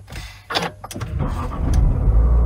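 Nissan Qashqai 1.3 DIG-T 140 mild-hybrid inline-four being started from the push button: a short burst of starter cranking about half a second in, then the engine catches and builds to a loud, steady idle rumble near the end.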